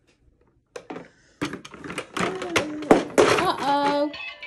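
Clicks of a toddler pressing the buttons on a plastic musical toy train, then the toy's electronic sounds playing from about a second and a half in: a voice-like passage and a tune with held notes near the end.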